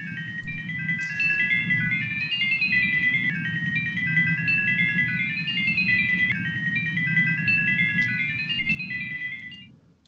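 Sonification of astronomical data made with NASA's xSonify software: a fast run of short, electronic beeping tones jumping up and down in pitch like a melody, over a steady low rumble, stopping just before the end.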